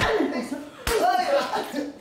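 Two sharp open-hand slaps landing on a person, one at the start and one just under a second later, with a high raised voice crying out between them.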